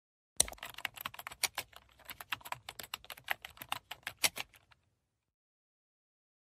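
Computer keyboard typing: a quick, uneven run of keystrokes for about four seconds with a brief pause near the middle, as a password is entered.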